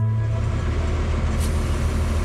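An engine running steadily with a low rumble, as the last notes of music fade out at the start.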